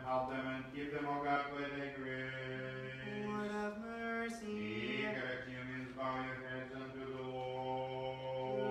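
Orthodox liturgical chant: a low male voice intoning in long, held notes that step up and down in pitch, with a brief break around three seconds in.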